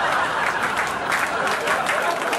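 Audience applauding, a dense even patter of many hands clapping.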